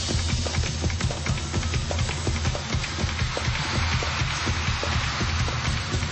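Live band playing a fast instrumental intro, percussion striking over a steady bass beat, with a hissy wash of noise swelling through the middle.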